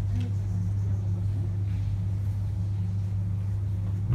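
A steady low hum, even in level throughout, with no speech over it.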